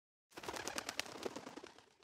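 A quick, irregular rattle of sharp clicks lasting about a second and a half, fading out near the end: an intro sound effect under the channel's logo.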